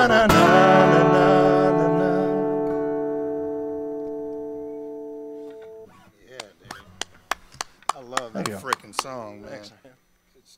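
Final chord of an acoustic and electric guitar strummed together and left ringing, fading slowly until it is damped about six seconds in. Then scattered hand claps with a few voices, stopping just before the end.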